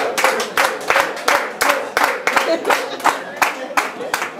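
Concert audience clapping together at a steady pace of about three claps a second, with voices calling out among them as the band comes on stage.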